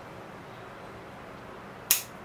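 Hand-held bonsai pruning cutters snipping off a dead, dry twig tip of a ficus bonsai: a single sharp snip near the end.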